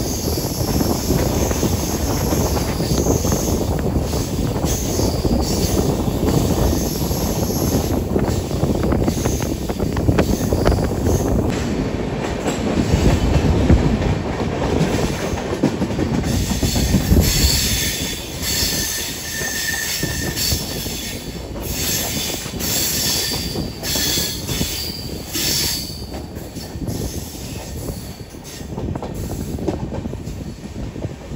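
Passenger express train running on a curve, heard from an open coach door: a steady rumble of wheels on rail with clatter over the track. In the second half come bursts of high-pitched wheel squeal.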